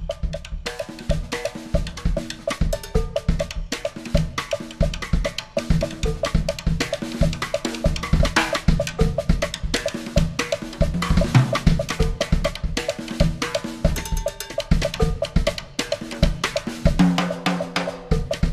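Drum kit played solo: fast, dense strokes across the toms, snare and bass drum, with cymbals ringing over them.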